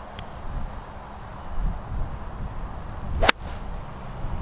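A four iron swung at a golf ball on fairway turf. A short swish is followed by one sharp crack of the clubface striking the ball, a little over three seconds in.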